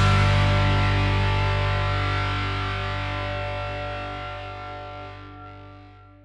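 Background rock music ending on one held, distorted electric guitar chord that slowly fades away.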